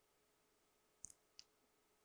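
Near silence: quiet room tone, with two faint, very short clicks about a second in, about a third of a second apart.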